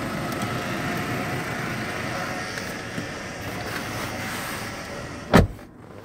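Ford Everest's electric power-seat motor running steadily as the driver's seat is adjusted, then a single sharp knock near the end.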